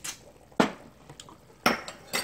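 Tableware clinking: a few sharp clinks of utensils and dishes on the table. The loudest come about half a second in and near the end.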